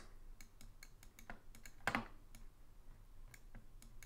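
Faint, irregular clicks and taps of a stylus on a writing tablet as words are handwritten, one a little louder about two seconds in.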